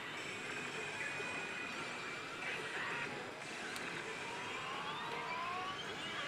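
Electronic sound effects from an Oh! Bancho 4 pachislot machine during a battle presentation, over the dense din of a pachinko parlor; a rising sweep builds over the last second and a half or so.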